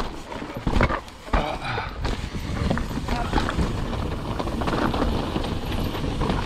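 Mountain bike rolling fast down a rocky dirt trail: the tyres crunch over loose stones, and the bike rattles and knocks as it hits rocks, with the hardest knocks about a second in.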